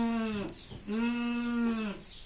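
A person's voice giving two drawn-out, steady 'mmm' moans. The first is short, and the second lasts about a second and dips in pitch as it ends.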